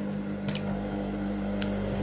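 Industrial sewing machine's motor humming steadily at idle, not stitching, with a couple of faint clicks while the fabric is repositioned.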